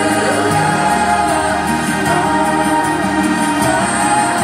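Live pop concert music over an arena sound system: a sung melody over soft accompaniment, with many voices joining in like a choir.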